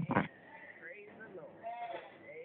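Scattered voices of a church congregation, opening with a short loud burst and ending with a stronger drawn-out voice.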